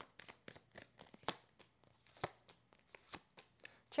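A deck of tarot cards being handled and dealt onto a wooden table: a faint, irregular run of light card clicks and flicks, with sharper snaps about a third of the way in and a little past halfway.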